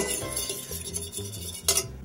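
Metal fork stirring beaten egg yolks and water in a stainless steel saucepan, scraping and clinking against the pan, with a louder clink near the end.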